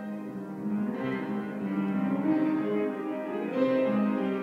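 Piano playing a slow passage of held notes and chords.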